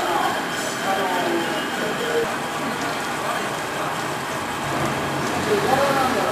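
Steady mechanical noise of processing machinery running, with indistinct voices talking underneath.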